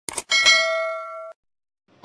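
Subscribe-button sound effect: two quick clicks, then a bright bell ding that rings for about a second and cuts off suddenly.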